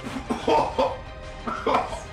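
A man retching and coughing over a kitchen bin in two short bouts, the second about a second and a half in, gagging on a drink of mixed raw egg and other forfeit ingredients.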